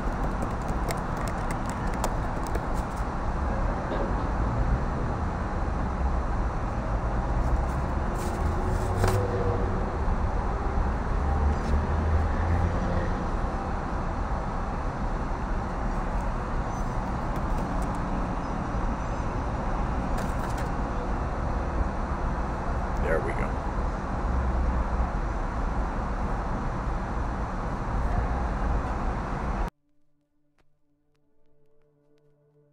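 Steady, loud rushing background noise with faint voices in it, like street or traffic ambience, cutting off suddenly just before the end.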